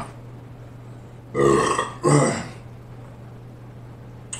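A man burping loudly twice in quick succession, about a second and a half in.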